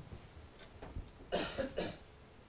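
A person coughing twice in quick succession, a little more than a second in.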